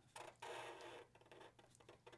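Near silence, with faint scratching of a black permanent marker drawing on paper, mostly in the first second.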